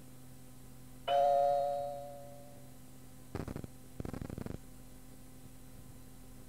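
A cueing chime recorded on the answering-machine message cassette: one ringing tone about a second in, fading away over about a second, marking an upcoming outgoing message. Two short buzzy bursts follow a couple of seconds later, over a faint steady hum.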